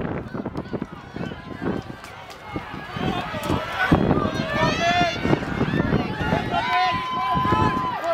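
Spectators at a relay race shouting and cheering the runners on, many voices overlapping. The shouting grows louder about three seconds in, and one long, high, held call comes near the end.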